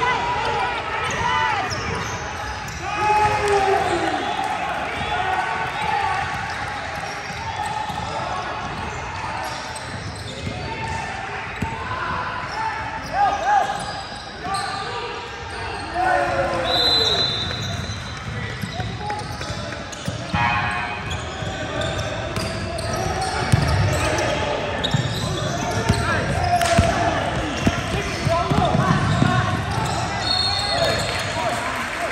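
Basketball being dribbled and bouncing on a hardwood gym floor, with a brief high sneaker squeak about seventeen seconds in, under players and spectators calling out.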